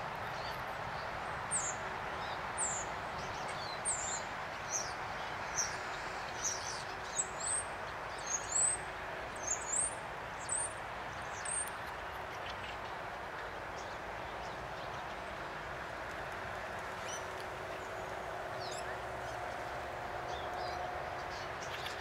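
A series of short, high, thin bird calls, about one a second, that die away about halfway through, over a steady background noise.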